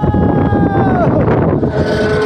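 A person's high-pitched held cry, one long note that falls away a little over a second in, over wind buffeting the microphone as the flying-scooter car swings around.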